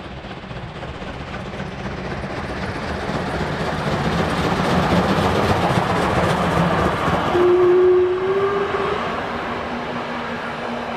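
Steam locomotive hauling a train of passenger coaches passes close by, its rumble and the clatter of the coaches' wheels growing louder to a peak as the coaches go by, then easing off. Near the end a short steady tone sounds for about a second and a half, the loudest moment.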